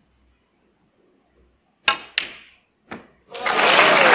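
After near silence, a snooker cue tip strikes the cue ball about two seconds in. A sharp ball-on-ball click follows a moment later, and another knock of a ball about a second after that. Then audience applause breaks out near the end.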